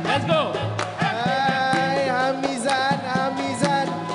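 Dikir Barat ensemble performing: a lead male voice sings a melody that slides and bends in pitch, over maracas, a hanging gong and hand-drum strikes keeping a steady beat.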